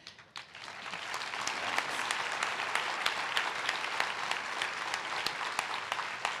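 Audience applauding. It builds over the first second or two, then holds steady.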